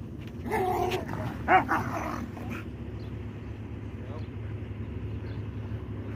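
A dog barking twice within the first few seconds, the second bark short and the loudest.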